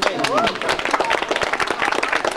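A small group of listeners clapping at the end of a tune, with a voice calling out near the start.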